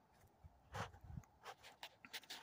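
Near silence outdoors, broken by a few faint, brief rustles.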